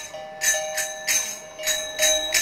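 Music with a bright metal bell struck in a steady beat about twice a second, its ringing held between strikes, over a slowly wandering melody.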